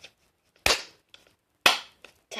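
Two loud, sharp slaps about a second apart as slime-covered palms are clapped together on a lump of slime.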